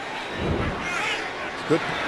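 A low whooshing thump about half a second in, from the broadcast's replay-transition graphic, over a steady stadium crowd murmur.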